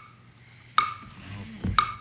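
Game-show lightning-round timer ticking once a second, each tick a short bright click with a brief ring; two ticks fall in this stretch.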